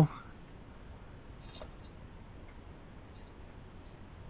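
Quiet handling of dough by hand in a mixing bowl, with a few faint light metallic clinks: one about a second and a half in and two near the end.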